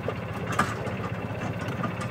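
A small vehicle's engine running steadily.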